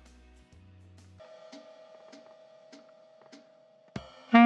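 Faint backing music: a low held note for about the first second, then a steady higher tone with soft, evenly spaced clicks about every 0.6 seconds, ahead of the saxophone's entry.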